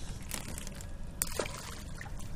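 Water splashing and trickling as fish are shaken out of a wire fish trap over the side of a boat, with a few short, sharp clicks.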